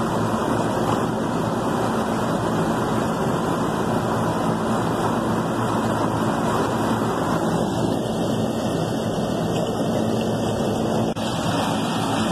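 Carrier rooftop AC unit running in cooling with one condenser fan on and the other cycled off by its fan cycle switch to hold up head pressure in cold weather: a steady fan and compressor hum.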